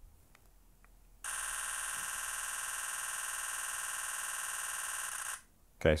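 Nikon Z9's artificial electronic-shutter sound firing continuously in a 20-frames-per-second burst: a rapid, even stream of shutter clicks that starts about a second in, runs about four seconds and cuts off suddenly.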